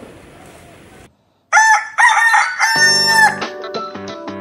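A rooster crowing once, loud, in three parts with the last note held longest, starting about one and a half seconds in after a brief silence. Plucked guitar music begins under the end of the crow.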